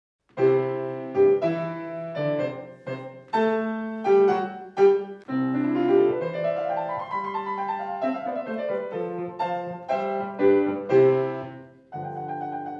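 Solo piano playing: a series of struck chords, with a fast run that rises and then falls back in the middle.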